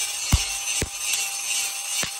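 Hammer strikes on a red-hot knife blade lying on a steel anvil post: two clear blows about half a second apart, the first the loudest. Background music plays throughout.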